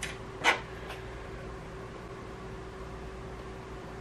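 A few light clicks from hands working at a 3D printer's toolhead and filament-cutter lever, the loudest about half a second in. Under them runs a steady fan hum with a faint held whine.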